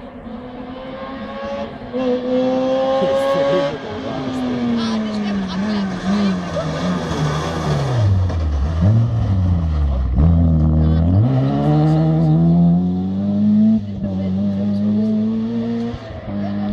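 Opel Astra rally car's engine coming through a bend at speed. The note climbs briefly and cuts off sharply, then falls steadily and bottoms out as the car slows for the corner, then rises again as it accelerates away and holds high.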